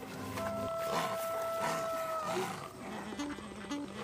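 A wild boar grunting in a barn, over background music whose long held high note bends down and fades a little over two seconds in, above a stepping low line.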